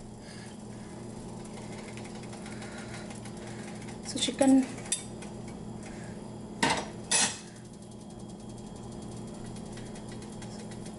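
Metal ladle and fork clinking against a cooking pot of chicken soup: a few sharp taps a little before the middle, then two louder clinks about two-thirds of the way in, over a steady low hum.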